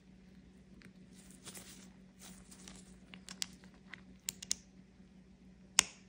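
Soft rustling of a nitrile-gloved hand and a few sharp clicks from pliers pressing a small magnet into the hole of a 3D-printed plastic ball, the loudest click near the end. A faint steady hum sits underneath.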